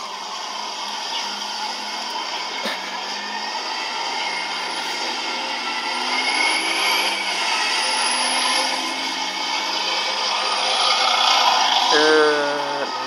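City transit bus passing close by and pulling away over steady traffic noise, its engine rising in pitch about halfway through. The sound is thin, with no deep bass.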